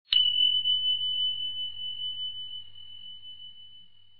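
A single bell ding, a notification-bell sound effect: struck once just after the start, then one high clear tone ringing on and slowly fading, with a slight wavering in its level.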